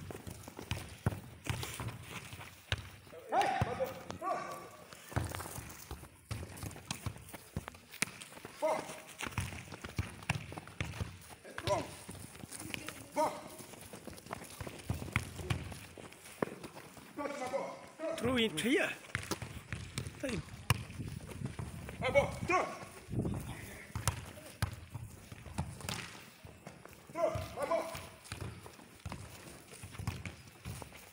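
Voices calling out, with scattered sharp thuds and slaps of a football being thrown and caught by hand and footsteps running on grass.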